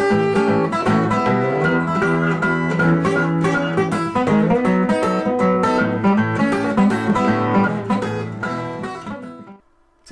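Steel-string acoustic guitar fingerpicked in an acoustic blues style, bass notes under a treble melody. It dies away near the end.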